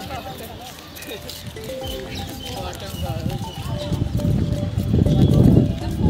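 Indistinct voices with music-like held tones, and a low rumbling noise that grows loud through the second half.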